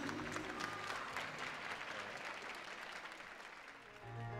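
Audience applause, many hands clapping, fading steadily away.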